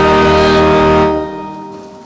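Church organ holding the final chord of the entrance hymn, released about a second in, the sound then dying away in the church's reverberation.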